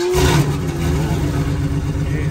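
1986 Oldsmobile Cutlass 442's V8 engine, just caught after sitting about three weeks, running steadily with a low rumble.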